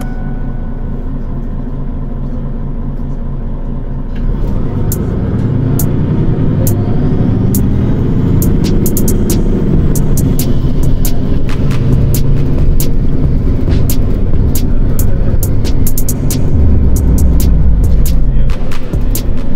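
Car driving, heard from inside the cabin: a low engine and road rumble that grows louder from about four seconds in, with the engine note rising and falling near the middle. Scattered sharp clicks run through it.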